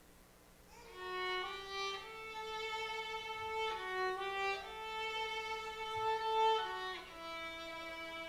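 Solo violin starting a slow melody about a second in, playing long held notes with gliding changes of pitch between them.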